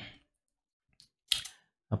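A quiet pause broken by two short clicks, a faint one about a second in and a slightly louder one just after.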